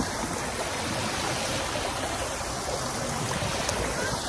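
Steady rush of water from a stepped cascade spilling into a pool.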